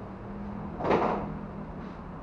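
One short knock about a second in, over a low steady hum.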